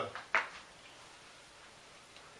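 The end of a man's word, one brief soft noise, then near-quiet room tone in a small room.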